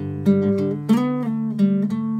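Nylon-string classical guitar played fingerstyle: a short fill-in phrase of single plucked notes and small chords over a D chord, with a new note struck about every half second to two-thirds of a second.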